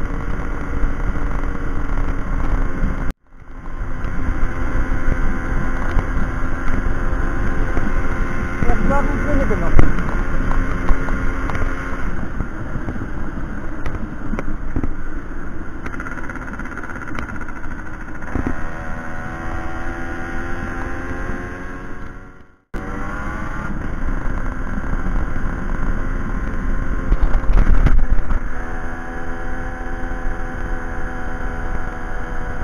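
1992 Aprilia Classic 50 Custom moped's 50 cc two-stroke engine running at cruising speed, its pitch falling and rising with the throttle in the second half. The sound cuts out for an instant twice, about three seconds in and again past the twenty-second mark.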